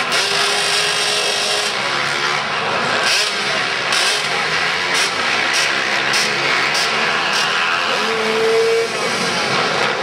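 Several small pit bike engines revving and running at once as the bikes ride around an indoor dirt track, the pitch rising and falling as riders throttle on and off, with the sound carrying through a large arena hall.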